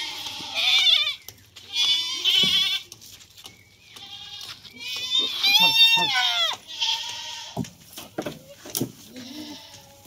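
Ganjam goats bleating: about four high, quavering bleats, the loudest one about five to six seconds in, its pitch dropping at the end.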